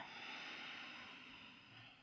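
A person's faint, slow breath while holding a yoga pose: a soft hiss that fades away, otherwise near silence.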